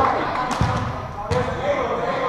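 A volleyball being struck during a rally, two sharp hits about half a second and about a second and a half in, echoing in a large gym, with players' voices.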